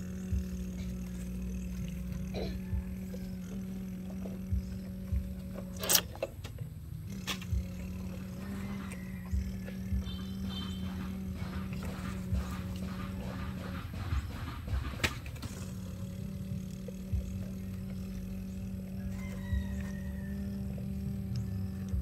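A child's voice humming one steady low engine drone in imitation of a toy excavator and truck working, breaking off twice for breath. Light clicks and knocks of plastic toys and scraping dirt run under it, the sharpest about six and fifteen seconds in.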